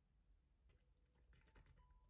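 Faint light clicks of tableware, starting under a second in: a small salt cup set down on the tray and metal chopsticks tapping against a ceramic noodle bowl.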